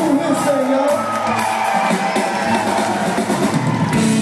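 Live rock band playing electric guitar, bass guitar and drums on a theatre stage, with audience whoops over the music.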